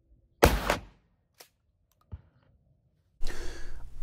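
A single gunshot from a long gun, about half a second in, sharp and loud with a short fading tail. Two faint clicks follow, and near the end a steady room hiss comes in.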